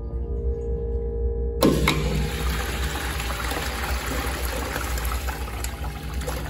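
American-Standard wall urinal flushing: about one and a half seconds in, a sudden rush of water starts and runs on steadily. Before it only a steady hum is heard.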